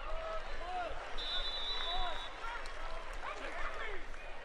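Football stadium crowd noise, many voices shouting at once after the play. A referee's whistle blows for about a second, starting about a second in, as the play is whistled dead.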